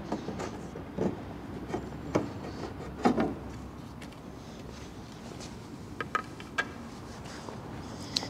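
Scattered light wooden knocks and rubbing as a long wooden piece of a 1984 Yamaha C3 grand piano's case is lifted off and set aside, the last piece out of the way before the action is slid out. There are a few single knocks in the first three seconds and a quick cluster of clicks about six seconds in.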